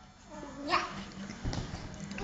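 A toddler girl's high, drawn-out whiny "yeah", its pitch rising steeply, followed by a dull bump about halfway through.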